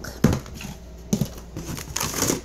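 Items being handled in a cardboard box of cans and packages: a sharp knock about a quarter second in, then lighter clicks and rustling.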